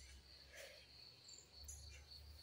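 Near silence but for a faint steady high chirring of crickets, with a few brief faint high chirps near the end.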